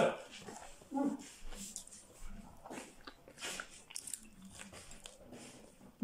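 A person chewing a bite of crunchy fried food close to the microphone, with irregular short crunches and mouth clicks, and a brief hummed "mm" about a second in.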